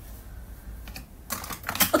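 A quick run of sharp clicks or taps, like typing on a keyboard, starting a little past a second in over a faint low hum, leading straight into a woman's voice at the very end.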